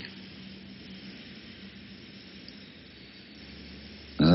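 Steady hiss with a faint low hum: the background noise of an old recording of a spoken talk, with no speech.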